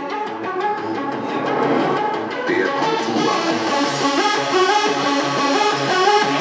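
Makina dance music from a DJ's decks played loud over a club sound system, with a steady driving beat.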